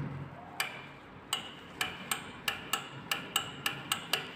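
Metal push button on a KMZ elevator landing call panel clicking as it is pressed over and over: about ten sharp clicks, each with a slight ring, coming faster toward the end.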